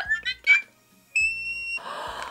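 A single electronic beep, one steady high tone held for a little over half a second past the middle, with a short rush of noise following near the end.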